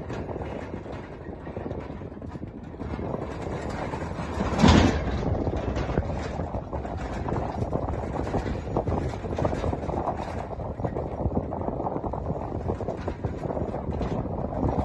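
Steady rumble of a vehicle driving over rough ground alongside galloping horses, with irregular knocks throughout and one loud short burst about five seconds in.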